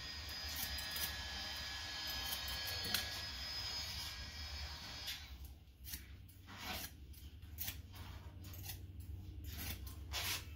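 Barber's scissors snipping hair in a run of short cuts, more than one a second, from about halfway in. The first half holds a steady hiss that stops there, and a low hum runs underneath throughout.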